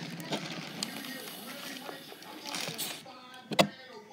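Small electric motor of a toy spin-art machine whirring as it spins the paint disc at high speed; the whir drops away about three seconds in, followed by a single sharp click.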